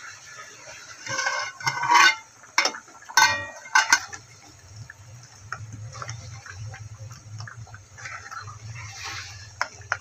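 A metal pot lid is lifted off with a few sharp metallic clanks and rings in the first four seconds. Then a metal ladle stirs and scrapes through thick, simmering lentil curry in an aluminium pot, with small bubbling clicks over a low steady hum.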